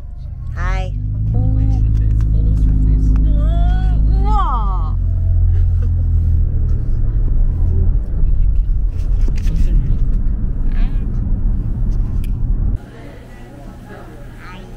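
Steady low road-and-engine rumble inside a moving car's cabin, with a woman's brief gliding vocal exclamations over it. The rumble cuts off suddenly near the end to much quieter indoor room sound.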